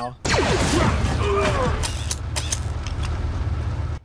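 A TV action-scene soundtrack: sci-fi blaster shots with quickly falling pitch over a steady low rumble, with a few sharp cracks a couple of seconds in. A brief laugh comes about a second in.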